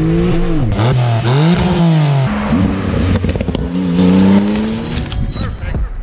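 Porsche 991.2 Turbo S twin-turbo flat-six with a catless Techart exhaust, revving under acceleration: the engine note dips and climbs steeply, breaks off suddenly about two seconds in, then climbs again in a second pull.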